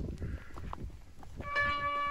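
Bell-like chiming notes start about one and a half seconds in, ringing steadily, over a low rumble.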